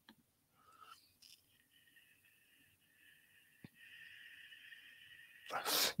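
Near silence in a small room, broken by one faint click about three and a half seconds in, then a sharp, noisy intake of breath near the end just before a man starts speaking.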